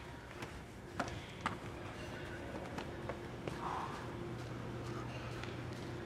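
A few sharp footsteps in the first second and a half, then a steady low room hum.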